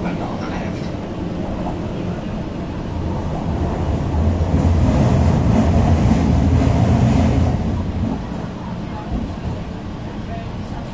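Shanghai Metro Line 4 train running, heard inside the passenger carriage: a steady low rumble that grows louder for about three seconds in the middle, then eases back.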